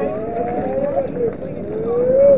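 Several voices overlapping in long, drawn-out shouted calls that waver in pitch, like chanting or encouragement called out during a youth baseball game.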